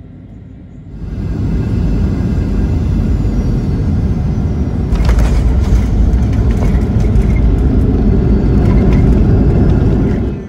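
Airliner cabin noise on landing, most likely a Boeing 737-800. A quieter cabin hum gives way about a second in to a loud, deep rumble of engines and wheels on the runway. The rumble grows louder about halfway through, with a cluster of knocks and rattles.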